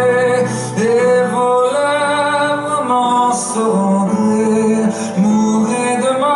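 Male voice singing a slow French chanson in long held notes that slide between pitches, over a soft instrumental accompaniment.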